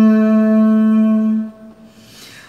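A man singing unaccompanied, holding one long steady note at the end of a phrase of a Malayalam song; the note stops about a second and a half in.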